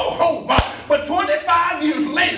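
A man preaching, with a single sharp smack about half a second in that is the loudest sound.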